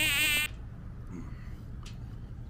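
A fly buzzing close to the microphone, its pitch wavering as it moves; the buzz cuts off suddenly about half a second in. After that there is only low background, with a faint click near the end.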